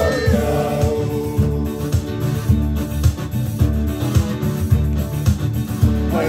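Electronic keyboard and acoustic guitar playing a song together at a steady beat. A man's singing voice holds a note in the first second, then the instruments carry on alone.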